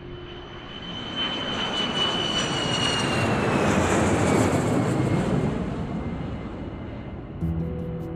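Jet airliner flying low overhead on landing approach: the engine noise swells to its loudest about four seconds in, with a whine that slides down in pitch as it passes, then fades away.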